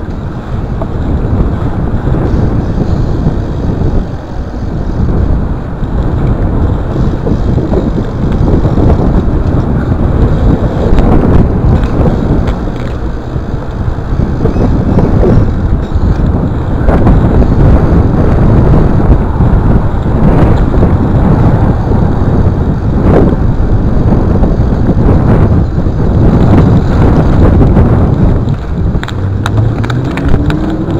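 Wind rushing over a chest-mounted camera's microphone as a bike rolls over asphalt, with tyre rumble rising and falling and a few sharp knocks.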